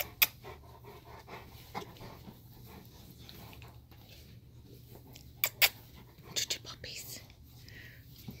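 Two young Cane Corso dogs scuffling on a bed, with a few sharp clicks standing out: one near the start and a loud close pair about five and a half seconds in.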